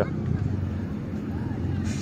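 A quad bike's (ATV's) engine idling steadily with a low rumble.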